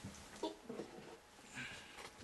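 Faint handling and rustling noises as a sanding block is picked up, with the lathe at rest and one short spoken word about half a second in.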